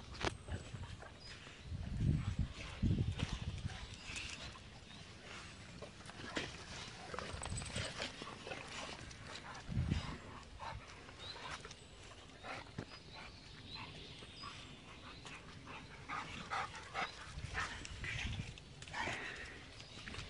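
A pack of dogs running and playing on grass, with short intermittent dog sounds and scattered clicks, and a few low thumps about two, three and ten seconds in.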